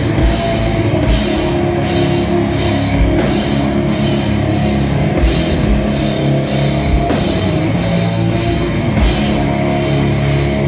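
Rock band playing live at full volume: heavy distorted guitars and bass held over a drum kit, with kick-drum hits and cymbal crashes all through, recorded on a phone from the crowd.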